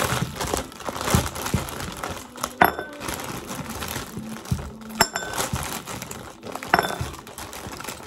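Plastic bag crinkling and rustling as frozen sweet potatoes are handled and pulled out of it, with three sharp, ringing clicks among the rustling.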